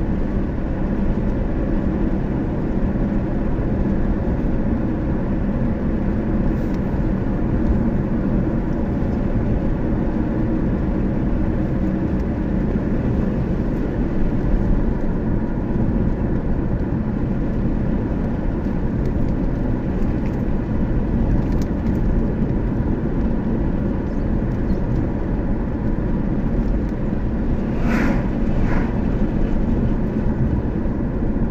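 Steady road and engine noise heard from inside a moving car, with two brief sharper sounds near the end.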